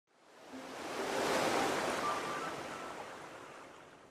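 A swelling whoosh of hiss, rising over the first second and a half and then slowly fading away, with a few faint short tones glinting through it: an intro sound effect for a logo reveal.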